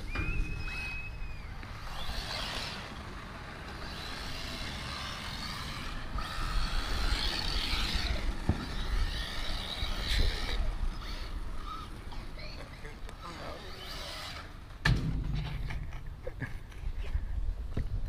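Electric RC car driving over concrete, picked up by a camera mounted on the car: a continuous low rumble of tyres and vibration, with a brief steady whine at the start. Faint voices can be heard in the background.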